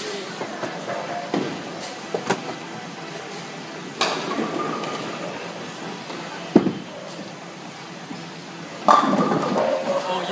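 Tenpin bowling alley din with several sharp knocks, the loudest a hard thud about six and a half seconds in, just after a bowling ball is released onto the lane. A louder burst of noise begins near the end.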